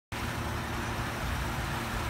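Steady low mechanical hum with an even hiss over it, unbroken throughout.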